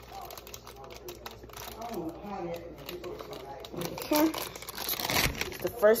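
Kitchen handling noises: crinkling and scattered clicks, with quiet muttered speech, a louder short rustle or clatter a little after five seconds, and a word spoken at the very end.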